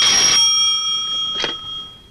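Desk telephone's bell ringing: a loud ring that stops early on, its bell tones then dying away over about a second and a half, with a short knock about 1.5 s in.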